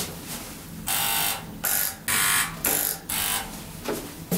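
An elevator car's electric buzzer sounding in about five short buzzes in quick succession, starting about a second in and stopping around three and a half seconds in.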